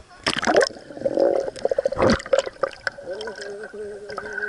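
Pool water splashing as the camera goes under the surface, with two loud splashes and muffled underwater gurgling and bubbling between them.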